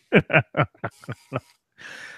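A man laughing: about six short bursts of laughter that get fainter, then a breath near the end.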